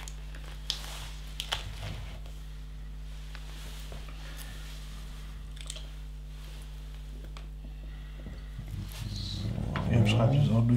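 A few small, sharp plastic clicks of LEGO bricks being handled and fitted together, mostly in the first two seconds, over a steady low hum.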